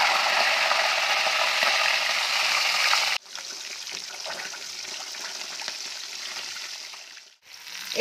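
A fish head sizzling in hot oil in a steel wok: a loud, steady sizzle that drops suddenly to a softer sizzle about three seconds in.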